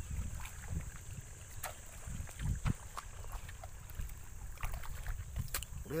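Wind buffeting a phone's microphone as an uneven low rumble, with a few faint scattered clicks and a steady faint high hiss.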